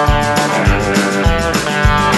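Background music: guitar-led rock with a steady beat.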